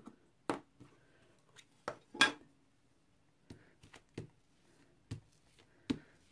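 Plastic case of a VersaMark ink pad being opened and handled against the stencil and table: a scattering of light clicks and knocks, the loudest a little past two seconds in.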